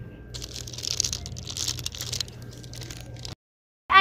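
Rustling and crinkling handling noise with scattered clicks for about two seconds, over a low steady hum; the sound cuts off abruptly near the end.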